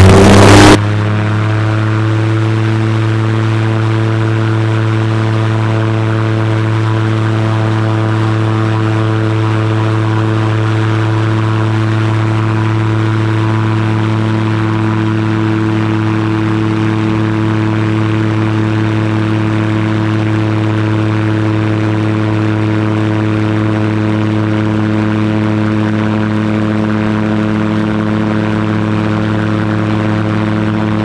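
Light amphibious aircraft's propeller engine running at a steady low power on the water, an even drone that holds one pitch throughout. In the first second a loud rush of noise over it cuts off abruptly.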